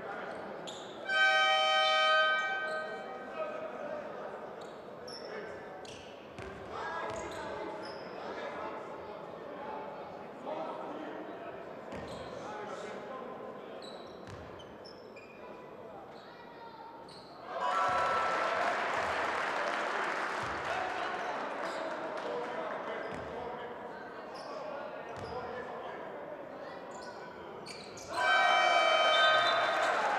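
Basketball arena crowd noise with a ball bouncing on the hardwood court during free throws. A horn-like tone sounds about a second in and again near the end, and from just past halfway the crowd cheers loudly as a free throw goes in, fading over several seconds.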